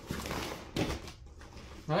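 A deflated vinyl inflatable sheet being flipped over and spread out by hand, its plastic rustling and crinkling, with a sharper rustle just under a second in.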